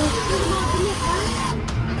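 Amusement-arcade ambience: indistinct voices over the steady noise of the machines around a fruit machine.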